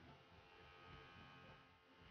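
Faint steady buzz of a small motorised honey suction pump running, drawing stingless-bee honey out of the hive's honey pots.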